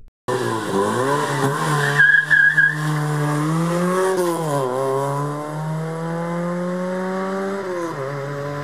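Fiat Seicento rally car's engine at high revs, the pitch rising and falling through gear changes as it passes close by, with a brief tyre squeal about two seconds in. After the pitch dips around the middle, the engine climbs steadily as the car accelerates away, dropping with a gear change near the end.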